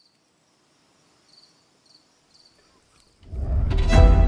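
Faint insect chirps, a few short high calls spaced about half a second apart, then about three seconds in, music swells in loudly with a deep bass and sustained tones.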